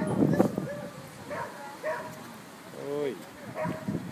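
A dog's single short call, rising and falling in pitch, about three seconds in, over people talking in the background.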